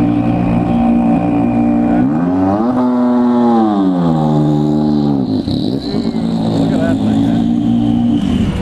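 Ford GT GTLM race car's twin-turbo EcoBoost V6 running at low revs as the car rolls down the pit lane. About two seconds in it revs up, holds briefly, then falls back over a couple of seconds to steady low running.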